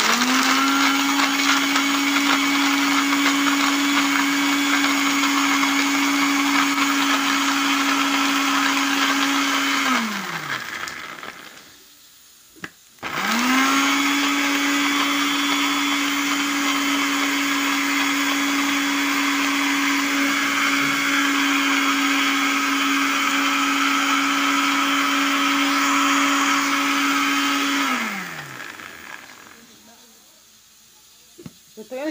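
Electric blender grinding roasted peanuts in two runs. The motor starts and runs at a steady pitch for about ten seconds, then winds down with falling pitch. After a click it runs again for about fifteen seconds and winds down near the end.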